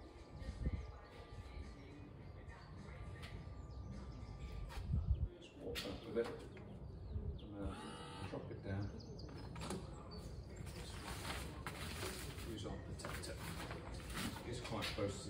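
Electric motor of a Smart Lifter LM boot hoist running with a steady whine for about five seconds as it swings a folded wheelchair out of the car boot. It stops with a click, followed by knocks and clunks of the chair frame and hoist.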